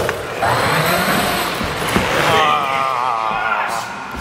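Traxxas Hoss RC monster truck's electric motor whining, its pitch wavering up and down with the throttle, as the truck runs along the quarter-pipe coping in a 50-50 grind attempt. In the first half a rough scraping rush rises in pitch.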